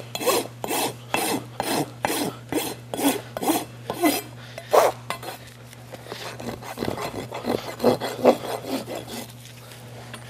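Farrier's rasp stroked across the sole of a horse's hoof, about two scraping strokes a second. After about five seconds the strokes turn lighter and quieter.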